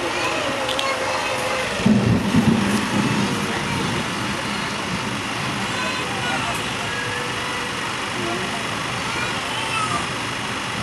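Steady running noise inside an Indian sleeper-class railway carriage, with passengers' voices talking in the background. A louder, short burst of low sound comes about two seconds in.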